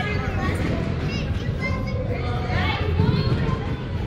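Hubbub of overlapping children's and adults' voices in a gymnasium, with no single voice standing out.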